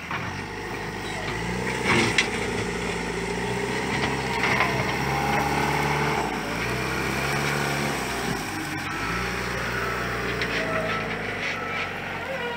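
Backhoe loader's diesel engine running under work, its engine speed stepping up and down several times as it digs and levels the ground.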